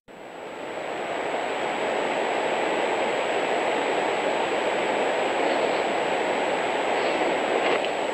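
Trail camera's own audio track: a steady rushing hiss that fades in over the first second, with a thin high electronic whine held throughout.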